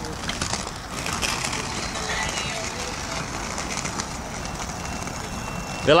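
Inline skate wheels rolling over asphalt and paving stones, a steady rolling noise.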